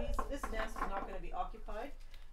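Bundle of dry, hollow Phragmites reed stems being handled, the stems giving a series of light knocks and rattles against each other and the table.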